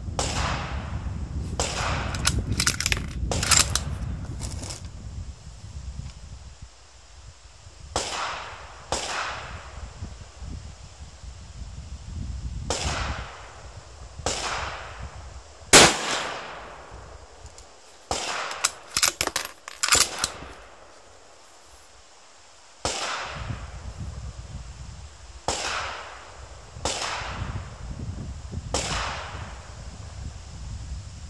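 Rifle shots at an outdoor shooting range: a dozen or so separate shots spread over the half minute, each trailing off in an echo, the loudest about halfway through. Two quick clusters of sharp metallic clicks fall in between, near the start and a little after the middle.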